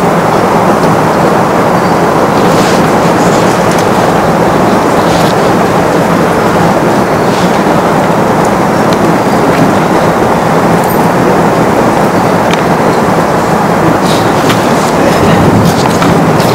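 Loud, steady rushing noise like static, with no speech in it, starting abruptly and holding at an even level throughout. A few faint light clicks sound above it.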